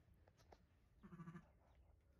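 A sheep gives one short, low, quavering bleat about a second in, beside a newborn lamb.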